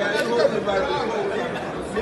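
People talking over one another: indistinct chatter.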